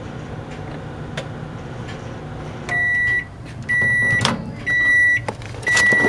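A 900-watt microwave oven running with a steady low hum as it finishes its last seconds. Then its end-of-cycle beep sounds four times, about once a second, with a clunk near the end as the door is opened.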